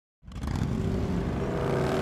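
A motor vehicle engine running steadily, coming in suddenly just after the start.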